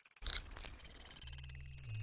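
Synthetic sci-fi computer sound effects for an animated 'initiating system' intro: a fast electronic pulsing chatter with high beeping tones, a short beep about a third of a second in, and a low hum that comes in past the middle and steps up and down in pitch.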